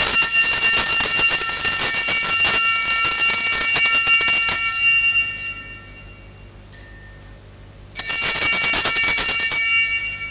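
Altar bells shaken in a rapid jingling ring at the elevation of the consecrated host. They ring for about five seconds and fade away, then ring again more briefly near the end.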